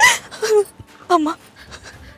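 A distressed voice crying out "amma" in short, breathy, sobbing bursts, with gasping breaths between.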